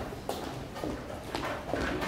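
Scattered wooden knocks and clicks of chess pieces being set down and clock buttons being pressed at nearby boards, about four in two seconds.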